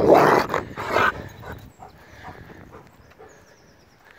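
Rottweiler growling in rough play right at the microphone, loud for about the first second, then fading away as the dog runs off.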